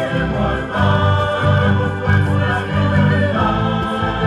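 Mixed choir singing with a live orchestra, violins among the strings, in sustained chords that change every second or so.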